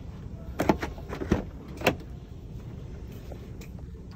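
Doors of a 2017 Porsche Panamera being handled: four or five sharp latch and handle clicks and knocks in the first two seconds, then quiet.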